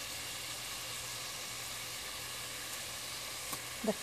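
A shallow layer of water boiling hard in a pan around meatballs, making a steady sizzling hiss.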